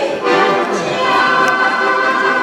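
Small women's choir singing in unison to an accordion accompaniment, with a long held note starting about a second in.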